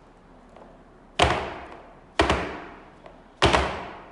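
Stretched canvas covered in wet acrylic pour paint tapped down hard on the tabletop three times, about a second apart, each a sharp thud dying away quickly; this knocks air bubbles up to the surface of the paint.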